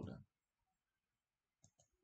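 Near silence, then two quick computer mouse clicks in close succession near the end.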